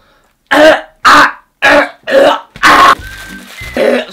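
A man coughing loudly five times in quick succession: exaggerated, forced coughs put on to drown out the crackle of a crisp packet being opened. Quieter background music follows near the end.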